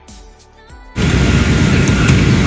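Soft background music for about a second, then it cuts off suddenly to loud, steady rushing noise of an airliner cabin.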